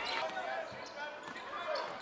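Basketball being dribbled on a hardwood court, with faint arena crowd murmur behind it.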